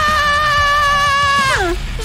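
A woman's long, high scream, held steady for about a second and a half, then sliding down in pitch and breaking off.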